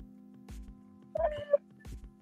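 A single short pitched cry, under half a second long, about a second in, over a faint steady hum.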